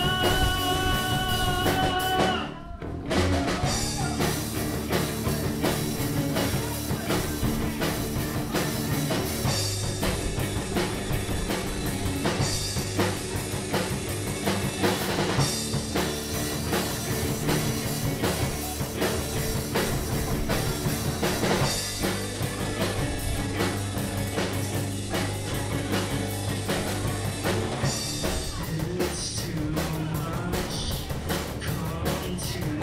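Live rock band playing on two electric guitars and a drum kit. A held guitar chord rings for about two and a half seconds, breaks off briefly, and then the full band comes in together.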